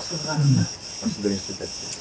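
A steady, high-pitched chorus of cicadas, with a man's voice speaking in short stretches over it.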